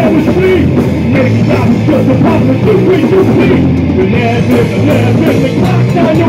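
Live rock band playing loud, with electric guitars, bass and a drum kit keeping a steady beat.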